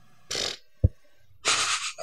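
A man breathing close to the microphone: two short, noisy breaths about a second apart, with a brief low thump between them.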